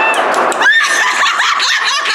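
Women squealing and yelping in high-pitched excitement, breaking into laughter, with clapping early on, right after a handgun shot at the range.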